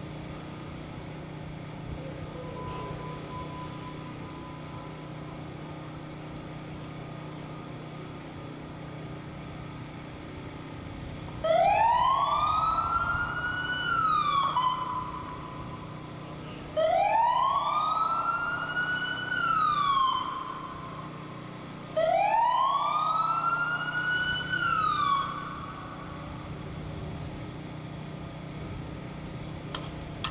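A siren sounding three wails about five seconds apart, each rising in pitch for two to three seconds and then dropping off sharply, over a steady low background hum.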